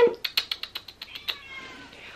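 A domestic cat meowing softly, a short falling call after a quick run of light clicks.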